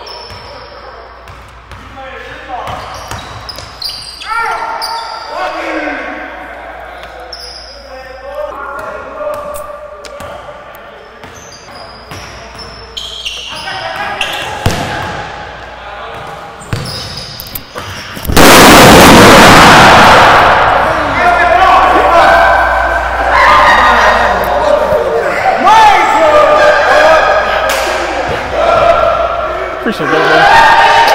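Basketball bouncing on a hardwood gym floor amid voices. About 18 seconds in comes a sudden, very loud bang as an overinflated basketball bursts, ringing around the hall, followed by loud shouting.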